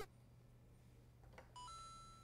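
Near silence, then a faint click and, near the end, a short electronic beep that steps up once in pitch, a sound effect laid under an on-screen '+2' graphic.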